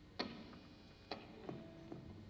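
Four faint, sharp clicks or knocks spread over two seconds, the first the loudest.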